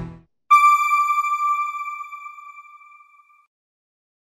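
The news background music stops just after the start. About half a second in, a single bright bell-like chime strikes and rings out, fading away over about three seconds: an end-card sting.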